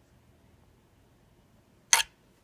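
Near silence, then one short, sharp rasp near the end as embroidery floss is drawn through the cross-stitch cloth.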